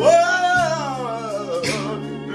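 A man singing gospel over sustained organ-voiced electronic keyboard chords: one long sung note that scoops up at the start and slowly falls away over the held chords.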